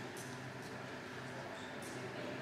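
Faint hall ambience with a low murmur of voices, broken by two brief sharp clicks, one just after the start and one near the end.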